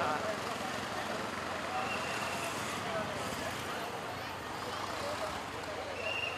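Outdoor crowd hubbub: many voices talking over one another over a steady street background noise.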